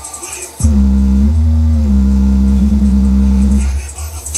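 Sony SS-VX333 speaker playing bass-heavy music loud, its woofer cone vibrating. About half a second in, a deep bass note comes in and holds for about three seconds, shifting slightly in pitch, then the music's quicker beat comes back near the end.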